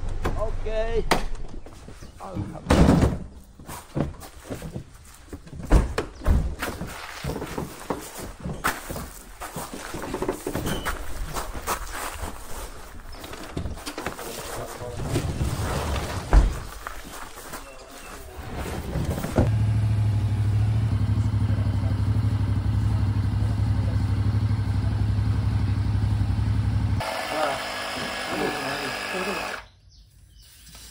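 Voices and scattered knocks and handling noises, then a portable electric air compressor running with a steady low hum for about eight seconds as it inflates a motorcycle tyre, stopping near the end.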